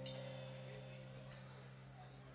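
The last chord of a live band, on acoustic guitar and electric bass, ringing out and slowly dying away at the end of a song, with a low bass note held underneath.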